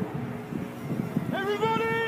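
Avro Lancaster's four Merlin V12 engines droning as the bomber flies by low. About two-thirds of the way in, a person's voice rises into one long held call that falls away near the end.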